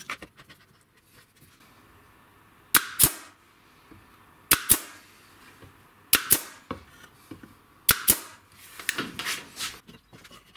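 Nail gun firing into the corners of a wooden strip frame: four quick pairs of sharp shots, about a second and a half apart. Rustling and handling noise follows near the end.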